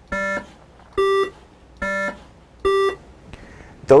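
Computer-generated buzzy electronic notes an octave apart, their frequencies in a ratio of 2 to 1: a low note, then the note an octave higher, played twice over, four short beeps low-high-low-high, each about a third of a second long.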